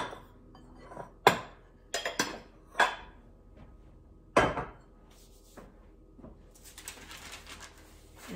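Kitchenware being set aside: a sifter and glass bowls knocking and clinking against each other and the stone countertop, about six sharp knocks in the first half, the loudest a little past the middle. Near the end, a soft rustle of parchment paper being lifted.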